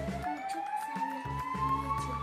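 Background music: a single tone gliding slowly upward, siren-like, over steady low notes.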